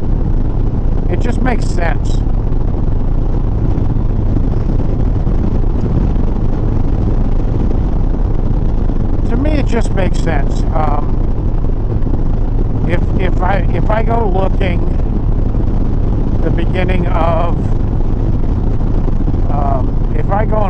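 Harley-Davidson Sport Glide's V-twin cruising at a steady highway speed, its engine note buried in a constant rush of wind and road noise on the handlebar camera's microphone.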